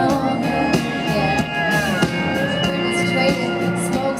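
Live country band playing: electric guitar over drums and bass, between the singer's vocal lines.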